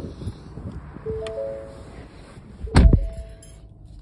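Short electronic chime tones from a Ford Focus's dashboard, then the car door shutting with a single heavy thunk just under three seconds in, followed by a faint chime tone.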